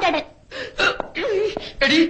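Malayalam film dialogue: a voice speaking in several short, clipped bursts with brief pauses between them.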